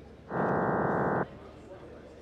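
Small test loudspeaker in a clear acrylic vented box playing a short electronic test signal, a dense chord of steady tones lasting about a second that starts and stops abruptly: the sync signal that opens a Klippel QC test run, here with the speaker's port blocked to simulate a defect.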